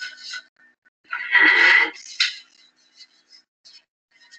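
Marker pen writing on a sheet of paper on a door: short, faint scratchy strokes at the start and again in the second half, with one spoken word and a sharp click in the middle.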